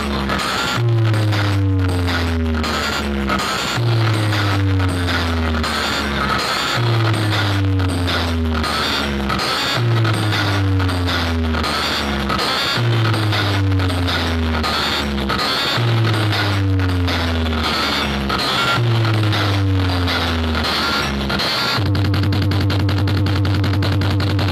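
Loud bass-heavy test music played through a tall stack of DJ speaker box cabinets: a falling bass pattern repeats about every three seconds over a fast beat, then near the end a steady bass tone is held.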